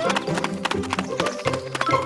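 Cartoon background music with a tune over a quick, tapping percussion beat.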